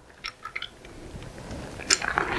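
Handling noise from a plastic instrument housing being turned in the hands: a few soft clicks, a low rustle that grows through the second half, and a sharper click near the end.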